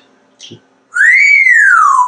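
African grey parrot giving one loud whistle about a second in, lasting about a second, rising in pitch and then sliding down.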